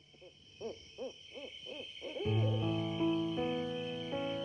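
Owl sound effect: about six quick hoots, each rising and falling in pitch, over the first two seconds. Soft sustained music chords then come in.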